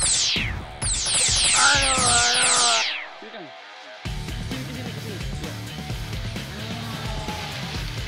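Cartoon sound effect of rapid-fire laser zaps, a quick string of overlapping falling 'pew' sweeps, over the first three seconds. After a short lull, a steady background music bed comes in about four seconds in.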